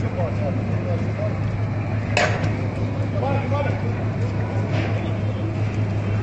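Steady low hum under constant noisy outdoor background, with faint distant voices shouting and one sudden sharp sound about two seconds in.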